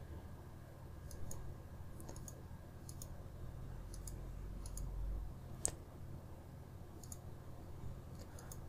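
Computer mouse button clicks, scattered irregularly and often in quick pairs, with one sharper click a little past halfway; a faint steady low hum runs underneath.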